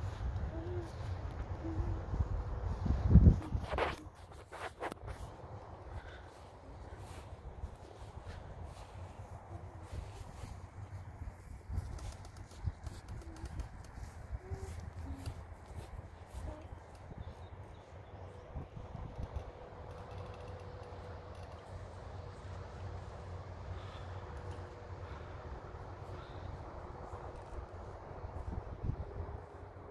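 Outdoor ambience: wind rumbling on the microphone, with faint scattered bird calls and a louder bump about three seconds in. A faint steady hum joins in the second half.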